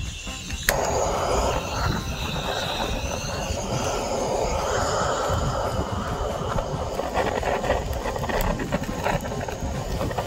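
Handheld butane torch on a cassette gas canister lit with a sharp click about a second in, then the flame burning with a steady rushing hiss.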